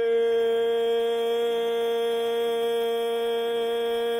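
A man singing solo, holding one long, steady note without vibrato.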